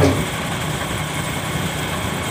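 Steady travel noise of a moving vehicle: an even rushing hiss over a low rumble.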